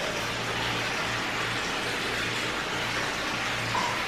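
Hot-spring water pouring steadily from a stone spout into a tiled bath, making an even splashing rush.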